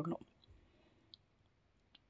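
The last word of a voice cuts off right at the start, then near quiet with two faint short clicks, about a second in and near the end.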